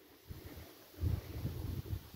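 Wind buffeting the microphone: a low, uneven rumble that starts about a second in, after a near-silent moment.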